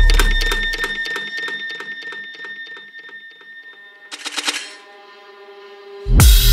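Dubstep track in a stripped-back breakdown: a deep bass hit fades out within the first second, leaving a fast, clock-like ticking rhythm over a held high tone. A brief flurry of rapid high ticks comes about four seconds in, and then the full track comes back in at the very end.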